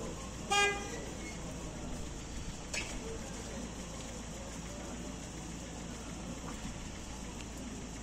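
A short single car-horn toot about half a second in, over steady street noise of slow traffic on a snowy road.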